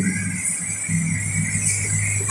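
A pause in a man's amplified talk, filled by a steady low hum and faint room noise from the microphone and loudspeaker system.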